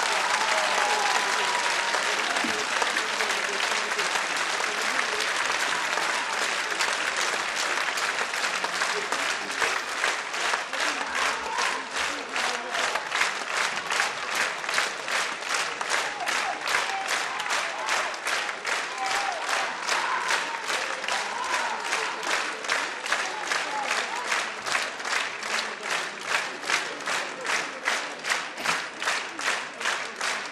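Concert audience applauding. A dense burst of clapping settles, about ten seconds in, into rhythmic clapping in unison, with a few voices calling out over it.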